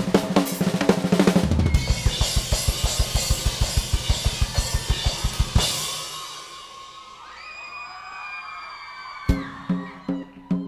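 Live drum solo on a rock drum kit: dense tom and bass-drum hits, then a fast even run of low strokes, about eight a second, under washing cymbals. About five and a half seconds in, a big hit rings out and fades for a few seconds, and heavy drumming comes back in with a loud hit about a second before the end.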